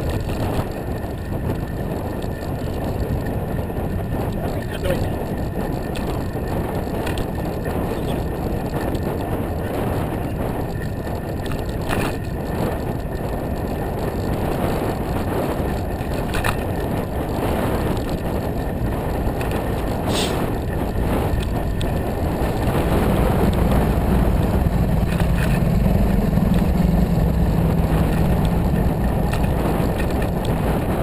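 Bike-share bicycle rolling along a paved trail, with wind buffeting the camera's microphone and a few sharp clicks and rattles from the bike. About two-thirds of the way through, a low steady hum comes up and grows louder.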